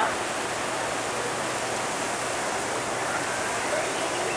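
Steady rushing noise of wind and of sea water churned up by a moving cruise ship.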